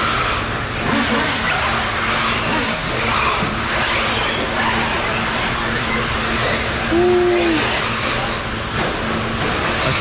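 Background noise of a large indoor RC track hall: a steady hum under an even wash of noise, with one short, slightly falling tone about seven seconds in.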